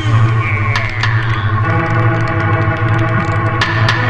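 Film soundtrack music: a loud, held chord of steady tones over a low drone, with a short falling glide in the first second or so.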